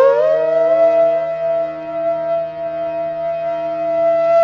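Instrumental background music: a flute-like wind instrument slides up into one long held note over a steady low drone.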